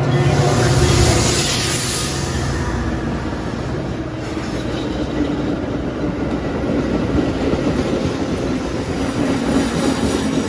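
An EMD F40PH diesel locomotive of an arriving Metra commuter train passes close by, its engine and a hiss loudest in the first couple of seconds. The steady rumble and wheel clatter of bilevel gallery coaches rolling past follow.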